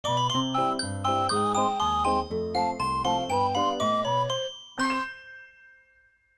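Short upbeat intro jingle: a quick melody of short pitched notes over a bass line. It ends on a single struck chord about five seconds in, which rings out and fades away.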